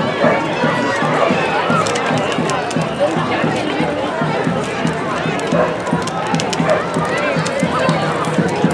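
Crowd of people walking in a street parade, many voices talking over one another in a steady babble with no single voice standing out.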